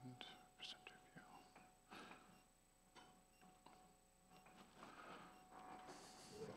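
Faint whispered, off-microphone talk over near-silent room tone.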